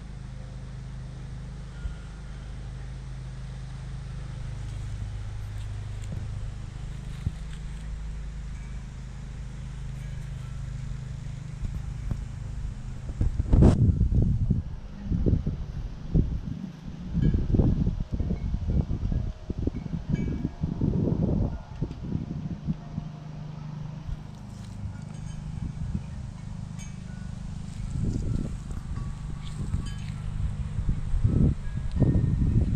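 Wind buffeting the microphone in irregular gusts, heaviest through the middle, over a steady low hum, with faint tinkling of metal wind chimes.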